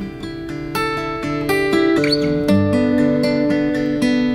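Steel-string acoustic guitar fingerpicked, a run of single plucked notes and arpeggiated chord tones that ring into each other, with no voice.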